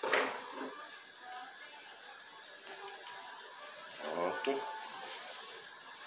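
A mostly quiet stretch with a man's short mumbled utterance about four seconds in.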